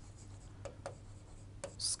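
Faint taps and light rubbing of a pen on an interactive whiteboard screen, a few scattered clicks over a steady low hum.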